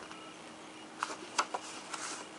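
Sheets of 6x6 scrapbook paper being leafed through by hand: a soft rustle, then a few crisp, sharp flicks of paper in the second half.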